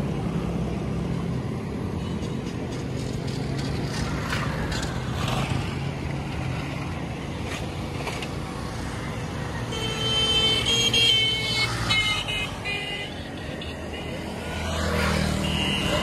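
Road traffic: a motor vehicle engine running steadily. About ten seconds in it grows louder for a few seconds, with a series of short high tones over it.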